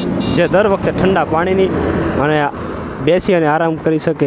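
A man talking in short phrases over the steady running of the open vehicle he is riding in.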